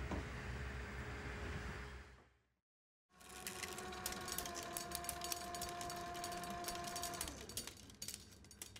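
A steady noise fades out, then a brief silence, then the whirring run of a film reel spinning on a flatbed editing machine: a steady whine of a few tones with rapid fine clicking, which stops near the end.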